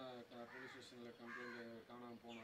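Crows cawing faintly in the background: a run of short, evenly repeated caws.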